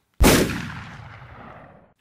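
A single loud boom: a sudden hit followed by a long tail that fades away over about a second and a half.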